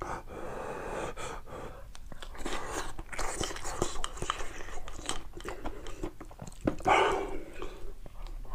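Close-miked chewing and wet mouth sounds of a man eating rice with crunchy young radish (yeolmu) kimchi, with small clicks and crunches throughout and a louder mouth sound near the end.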